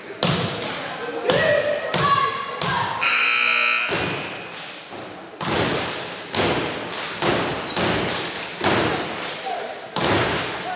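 A cheer or step group in the bleachers chanting, with rhythmic stomps and claps about two to three a second, pausing briefly for a held tone about three seconds in before the beat resumes.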